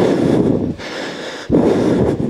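Two loud rushes of breath hitting a close-worn microphone, each lasting well under a second, with the second starting about a second and a half in.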